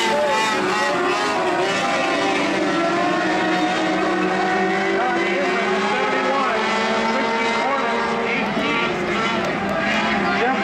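Several micro mod dirt-track race cars running on the track together, their engine notes overlapping and rising and falling as they circle.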